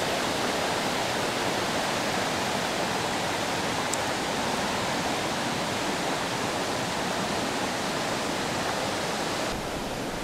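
A river running over rocks: a steady, even rushing of water that shifts slightly in tone near the end.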